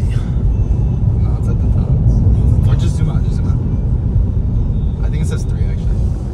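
Steady low road and tyre rumble inside the cabin of a Tesla Model 3 at highway speed, with no engine note since the car is electric.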